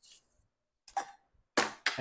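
A short cough from the person, about one and a half seconds in, after a faint brief sound about a second in.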